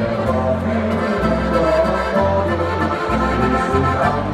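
Alpine folk band playing live, the accordion carrying the melody over guitar and bass guitar. The bass notes change about once a second.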